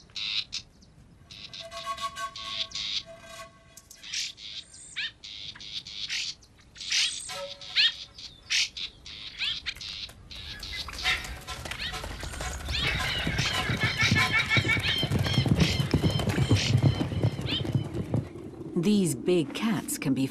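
Bird calls and chirps, short and repeated, through the first half; then background music builds in loudness and fills the second half.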